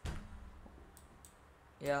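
Computer mouse clicks: a sharp click with a low thud right at the start, then two faint clicks about a second in.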